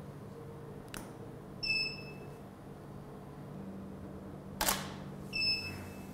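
A single sharp DSLR shutter click a little past halfway, with two short electronic beeps of the same pitch, one about two seconds in and one just after the shutter. There is a lighter click about a second in and a faint steady hum underneath.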